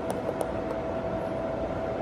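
Steady hiss and hum of the LED spot moving head's cooling fan running, with a couple of faint clicks near the start as the buttons on its display panel are pressed.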